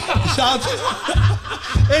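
Several people laughing and snickering over a music beat with deep bass notes that starts just after the opening and hits again several times.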